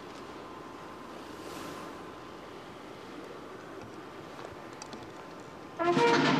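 Steady, fairly quiet open-air background hiss across a large stone courtyard. Near the very end a brass band suddenly starts playing, much louder.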